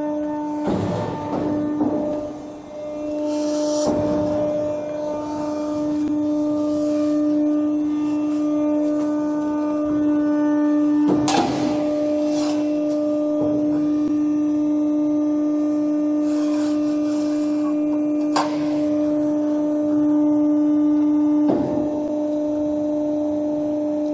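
RMT R-SMART plate roll's hydraulic drive running with a steady hum while the NC control sends the rolls back to their reference positions. A few short knocks sound about a second in, near four seconds, near eleven seconds and twice near the end.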